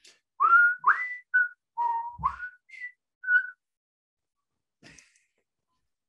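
A person whistling a short, wandering tune of about eight clear notes, several sliding upward, over about three seconds.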